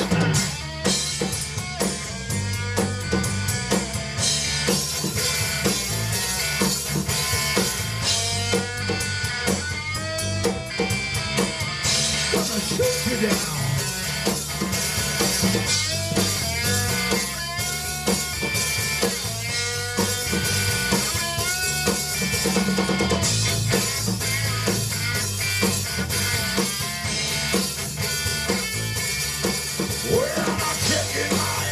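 Live rock band playing an instrumental break: an electric guitar lead with bent notes over a steady drum kit and bass guitar.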